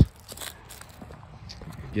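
Soft footsteps on a sandy dirt path strewn with dry leaves, a few faint steps.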